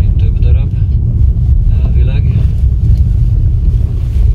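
Steady low rumble of a car driving slowly on a narrow road, heard from inside the cabin, with quiet voices talking briefly.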